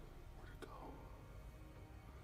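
Near silence: a low steady hum with a soft click about half a second in and a faint whispered voice.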